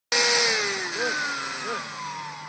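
Motor and propeller of a hand-held RC P-51 model plane running, its pitch gliding steadily down as the throttle comes back, with a thin high whine above it.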